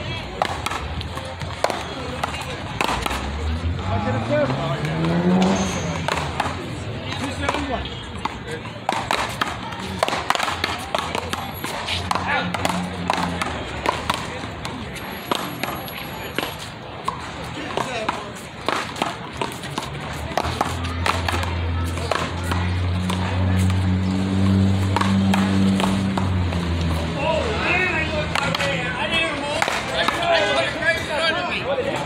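One-wall paddleball rally: a rubber ball struck by paddles and slapping off the concrete wall and court, a string of sharp hits every second or so. A low drone rises in pitch about four seconds in, and another steady low drone comes in during the last third.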